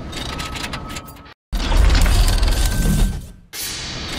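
Sound effects of an animated logo intro: a mechanical, clicking whoosh texture that cuts out briefly about a second in, then a deep boom that fades out about two seconds later.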